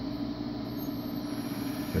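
Electric drill motor running at a steady speed, spinning the rod and gear mechanism of a wooden acrobat-monkey figure: an even hum.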